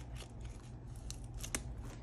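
Paper banknotes and envelopes being handled: a string of short, crisp rustles and snaps, the sharpest about one and a half seconds in.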